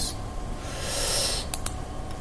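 A soft, hissing breath near the microphone lasting about a second, then two quick clicks of a computer mouse.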